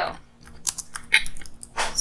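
Computer keyboard being typed on: a quick run of separate keystrokes as a short phrase is entered.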